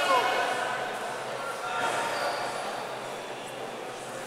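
A man's loud shout ends right at the start, followed by indistinct voices over the steady background noise of a large indoor hall.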